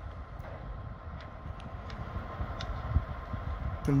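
Steady low outdoor rumble, with a few faint clicks and a soft low thump about three seconds in.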